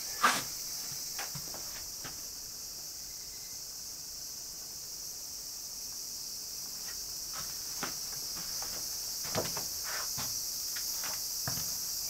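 Steady high chirring of insects throughout, with scattered footsteps, knocks and creaks on the hallway's worn floor; the sharpest knock comes just after the start.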